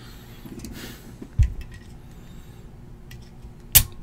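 Handling noises on a tabletop: a dull thump about a second and a half in, then a sharp knock near the end, the loudest sound, with faint ticks between.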